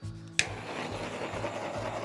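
Handheld torch clicking on about half a second in, then its flame hissing steadily as it is passed over wet acrylic paint to pop surface bubbles. Background music with a steady beat plays underneath.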